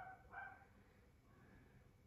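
Near silence: quiet room tone, with two faint, short pitched sounds right at the start and a fainter one near the middle.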